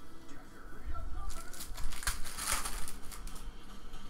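Foil trading-card pack wrapper crinkling and tearing as it is opened, a dense crackle that builds about a second in and lasts around a second and a half.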